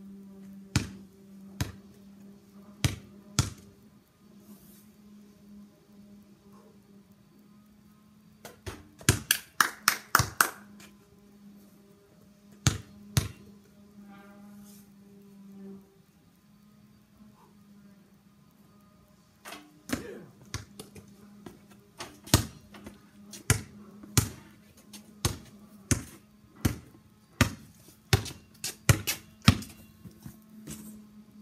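Basketball bouncing on a concrete driveway: a few single bounces, then a quick run of hits about nine seconds in, then steady dribbling, about two bounces a second, through the last ten seconds.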